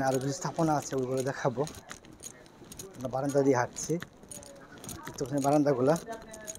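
A man's voice speaking in three short phrases with pauses between them, with faint light clicks and jingles in the background.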